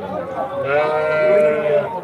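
A single long bleat from the penned sheep and goats, starting about half a second in and held steady for over a second.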